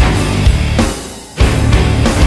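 Live heavy metal band playing loud with electric guitar. About a second in, the band stops for a moment, then crashes back in together.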